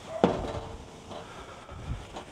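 Lid of a Weber Spirit gas grill shut with a metal clunk about a quarter second in, ringing briefly after. A smaller knock comes near the end.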